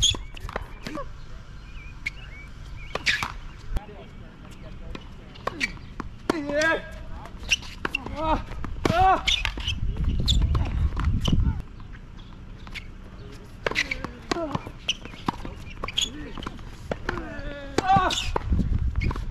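Tennis balls struck by rackets in a hard-court rally, sharp hits at irregular intervals of about one to two seconds, mixed with shoe steps on the court. A low rumble of wind on the microphone rises for a second or so around the middle.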